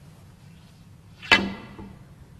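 A snooker shot: one sharp click of the balls that rings briefly, followed by a fainter knock about half a second later.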